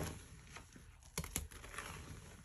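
A hand squeezing and kneading a thick, foamy paste of Foca detergent powder and water in a sink: wet squishing with crisp crackling clicks, two sharp ones a little after a second in.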